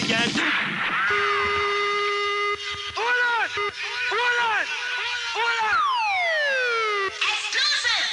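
Breakdown in a live jungle DJ mix. The drums drop out for a held synth tone and a run of short siren-like whoops that rise and fall. About six seconds in, a long falling glide sweeps down, and the beat comes back in near the end.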